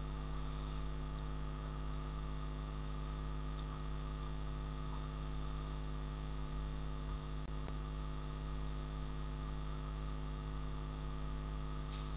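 Steady electrical mains hum in the recording: an unchanging low buzz made of several even tones, with nothing else over it.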